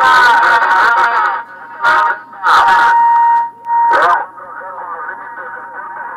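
CB radio receiver's speaker playing distorted, hard-to-follow sideband voices under static, with a steady whistle from interference running through them. Three short loud bursts of noise come about two, two and a half and four seconds in, after which the receiver drops to a quieter hiss with faint voices.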